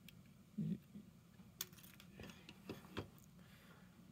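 Faint handling noise of a Raspberry Pi and projector circuit-board stack: a few small, sharp clicks and taps as the boards and ribbon cable are handled and the assembly is set down on a cutting mat.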